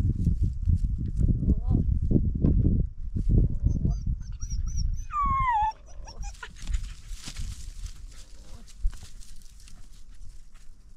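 A puppy gives one short whine about five seconds in, high and falling in pitch. Before it there are a few seconds of low rumbling noise and some faint high chirps.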